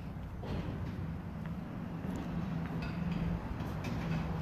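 Street ambience: a motor vehicle's engine hum, steady and growing slightly louder toward the end, with a few faint knocks of footsteps.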